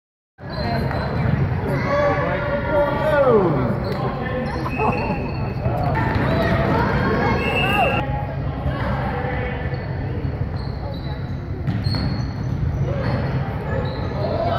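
Youth basketball game in a gym: a basketball bouncing on the hardwood court amid players' and spectators' voices calling out, all echoing in the large hall.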